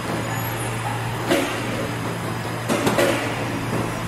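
Semi-automatic PET bottle blow-moulding machine running, a steady low hum with a haze of factory noise, broken by a few short sharp noises about a second and a half in and again near three seconds.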